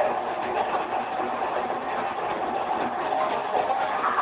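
Loud live metal concert sound, overloaded on the recording microphone: a dense, muffled, continuous wash with a few faint held tones.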